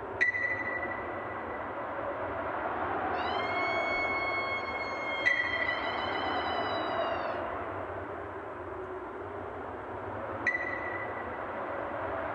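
Electronic sonar-like pings from the show's intro, three sharp high pings about five seconds apart, each ringing briefly. Between the first two a held synth-like tone with overtones swells in and bends downward as it fades, over a steady low hazy wash.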